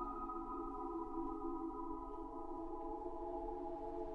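Ambient background music: a held, droning chord of several steady tones that shifts to a new chord near the end.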